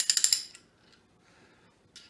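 Hand ratchet from a Soviet socket set being worked, its pawl giving a quick run of sharp clicks in the first half second, then stopping.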